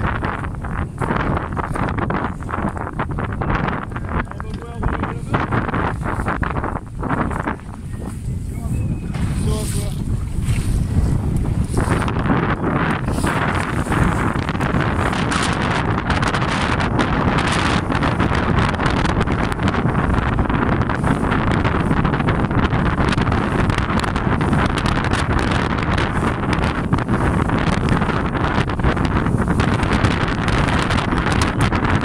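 Wind buffeting the microphone over the rush of choppy sea water, heard from a small boat under way; the noise grows denser and a little louder about twelve seconds in.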